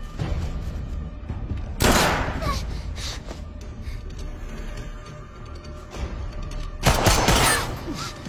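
Tense film score with two short, loud bursts of gunfire, about two seconds in and again near the end.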